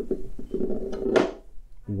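Toothed metal milling discs handled and set down on a tabletop: an uneven scraping rub, ending in one sharp metallic clack about a second in.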